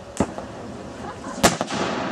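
Two salute cannon shots about a second and a quarter apart, the second louder and followed by a long rolling echo.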